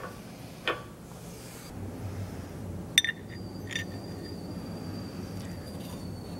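Steel keyway broach, thin shim and guide bushing being fitted into a collar's bore: a few light metal clinks, the sharpest about three seconds in, followed by a faint high ringing tone, over a low shop hum.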